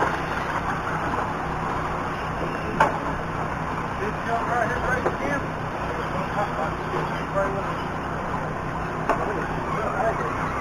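Outdoor racetrack background noise with faint distant voices. There is a sharp knock about three seconds in and another near the end.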